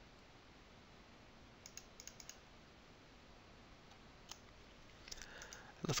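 Faint computer mouse clicks over low hiss: four or five in quick succession about two seconds in, and one more a little after four seconds.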